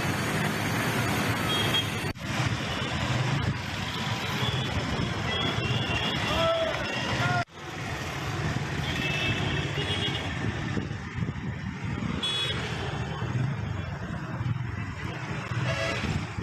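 Outdoor town ambience: steady traffic noise with faint background voices. It cuts out briefly twice, about two seconds and seven and a half seconds in.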